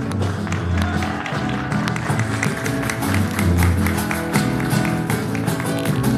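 Live band playing an instrumental vamp: acoustic guitar with a drum kit keeping a busy beat of quick hits over low bass notes.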